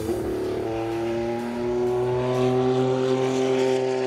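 Porsche 962 Group C race car's turbocharged flat-six accelerating on the track, its engine note climbing steadily in pitch over a few seconds.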